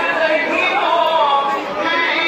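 A man's voice reciting a manqabat in gliding, drawn-out melodic lines, heard over the dense murmur of a large crowd.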